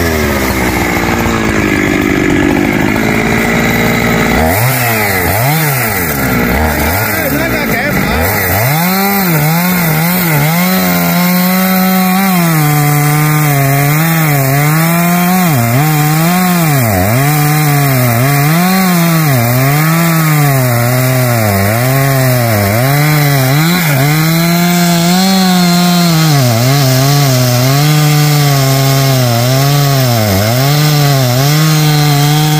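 Husqvarna 365 two-stroke chainsaw running at full throttle while cutting into the thick trunk of a rain tree. Its engine pitch rises and falls about once a second as the chain bites into the wood and frees up again.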